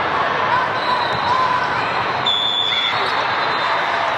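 Busy volleyball-hall ambience: crowd chatter and calls with the thuds of volleyballs being struck. A referee's whistle blows once, about two seconds in, for just under a second.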